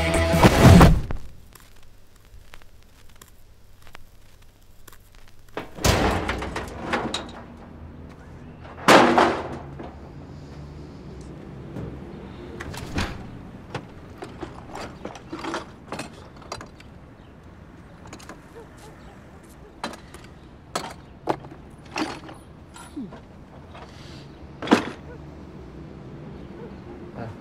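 Music cuts off about a second in. Then come heavy thuds and clatter as objects are dropped into a skip, with two loud impacts near the start, followed by scattered lighter knocks and rattles as items in the skip are handled.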